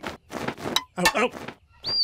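A bald eagle's high screech starting near the end, following a few short, sharp flapping sounds of its wings as it takes off.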